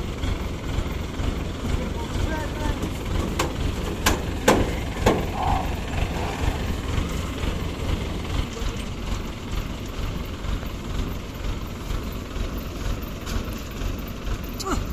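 Rice combine harvester's engine running steadily while grain is unloaded into sacks, with a few sharp knocks about four to five seconds in.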